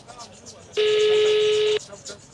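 Ringback tone of an outgoing mobile phone call, heard through the phone's loudspeaker while the call has not yet been answered. A single steady ring starts just under a second in and lasts about a second.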